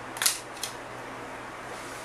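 Two brief light clicks, the louder about a quarter second in and a fainter one soon after, from fingers working at the memory module and its retaining clips inside the open laptop, over a faint steady hum.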